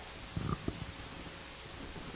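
A pause in the talk: quiet room tone with a faint steady hum, and two or three soft low thumps about half a second in.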